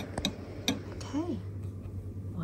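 A few light clicks of a metal spoon against a ceramic bowl, with a short vocal sound just after the middle.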